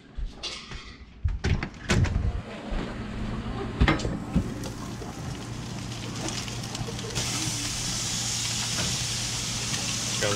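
A house door opening and shutting with a few knocks and latch clicks, then the steady low hum and hiss of a gas grill with steaks cooking on it. The hiss grows louder about seven seconds in.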